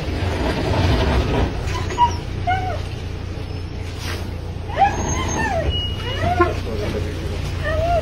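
A mixed-breed dog whining and whimpering in several short cries that rise and fall in pitch, the longest about five seconds in, over the low steady running of a pickup truck's engine.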